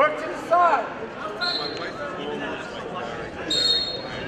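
Short shouts from coaches and spectators in a school gym, two in the first second. Then come two brief high squeaks, about a second and a half in and again near the end.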